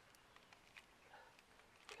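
Near silence, with a few faint clicks from handling a seven-pin trailer plug and its screws.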